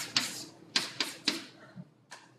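Chalk tapping and scraping on a blackboard as digits are written: a quick, uneven run of short, sharp strokes, loudest in the first second and a half, then fainter.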